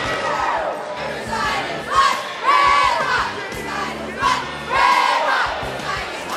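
Cheerleading squad shouting a chant in unison over a gymnasium crowd, with loud shouted phrases about two, three, four and five seconds in.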